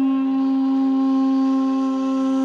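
A wind instrument, flute-like, holds one long steady note over a quieter, lower drone tone: the slow opening of a live Middle Eastern ensemble piece.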